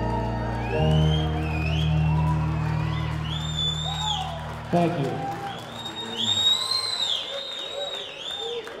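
A live rock band with piano, guitars and drums holds a final chord that cuts off a little past halfway, while the audience cheers and whoops over it and after it.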